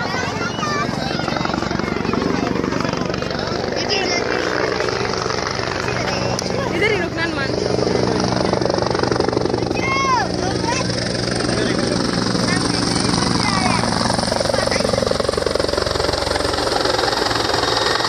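Helicopter flying low nearby, its main rotor beating in a fast, steady chop, a little louder from about eight seconds in. People's voices and shouts over it.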